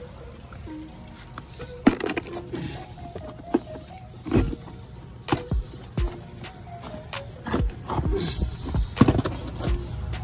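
Background music, with rocks being set down that knock against each other and the plastic tub several times, the sharpest knocks about two seconds in and near the end.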